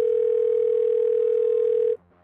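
A steady, mid-pitched electronic telephone tone, a voicemail-style beep, held for about two seconds and cut off suddenly. Faint background music runs underneath.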